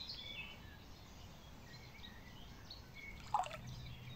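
Birds chirping faintly, and a single small splash on the water surface a little over three seconds in.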